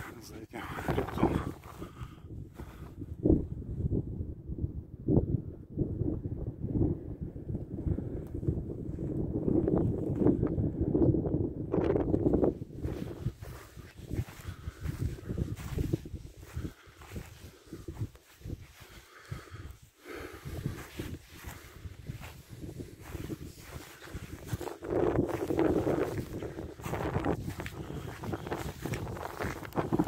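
Wind buffeting the microphone in gusts, with a walker's footsteps over stony ground.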